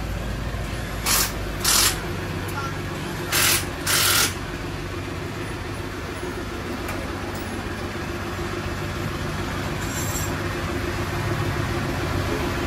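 Four short hissing spray bursts aimed at a motorcycle tyre in the first few seconds, with one faint one later, over a steady low hum.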